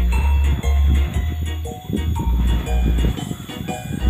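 Music played loud through a 2.1 bazooka speaker system with twin 8-inch woofers. Its deep bass notes are the loudest part, coming in held blocks of about half a second.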